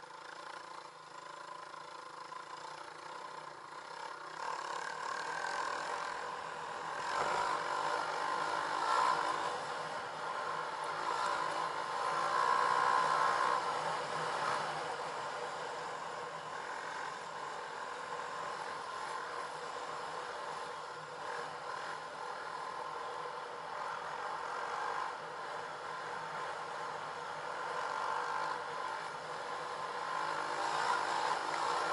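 Dirt bike engine running while riding, getting louder over the first several seconds as it picks up, loudest around the middle, then holding a steady note.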